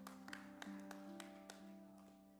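Faint keyboard music: low sustained notes that move to new pitches a few times, with light, evenly spaced clicks about three a second, fading toward the end.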